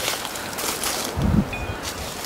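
Wind on the microphone mixed with rustling of dry brush and cedar branches, with a brief low thump a little over a second in.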